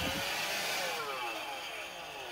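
Battery-powered Swiffer sweeper's small electric motor running with a steady whir of shifting pitches, easing off a little toward the end: it sounds like it might still work.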